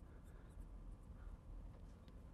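A few brief, faint strokes of a marker drawing a curve and writing a word on a glass lightboard.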